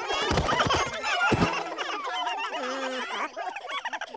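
Cartoon voices of a group of little chicks chattering and peeping over one another in high, gliding voices, with a thud about a second and a half in. A lower voice comes in briefly near the end.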